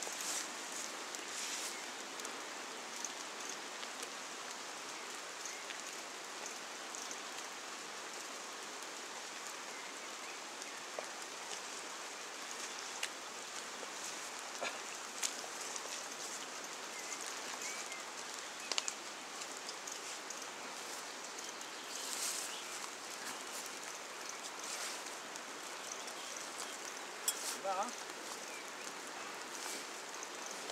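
Steady, even rush of a wide, fast-flowing river, with a few faint scattered clicks and ticks.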